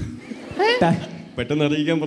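Speech over a microphone, with one brief high vocal exclamation that sweeps up and back down about two-thirds of a second in.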